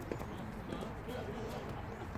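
Quick footsteps and shoe scuffs of tennis players moving on a hard court during a doubles rally, a rapid patter of light ticks, with faint voices in the background.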